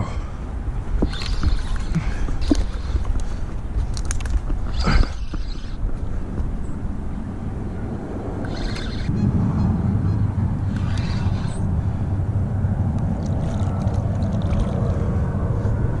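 A steady low rumble, swelling about nine seconds in, under scattered knocks and rustles of a spinning rod and reel being handled while a hooked fish is reeled in.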